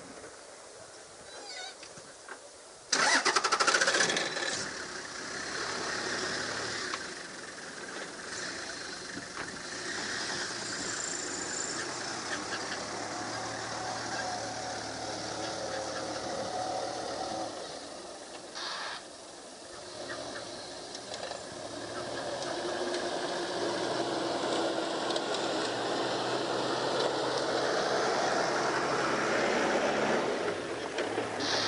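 Safari game-drive vehicle's engine starting suddenly about three seconds in, then running for the rest of the stretch as the vehicle moves.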